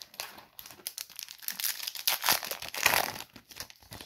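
Wrapper of a Topps baseball card pack crinkling and tearing as it is pulled from the box and ripped open, a dense crackle that is loudest about two to three seconds in.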